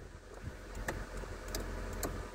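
A few faint clicks from the steering-column switch stalk of a 2000 Mazda Demio being moved, over a steady low hum.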